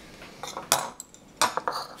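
A spoon clinking against a bowl, a few short sharp knocks, the first about half a second in and more around a second and a half in.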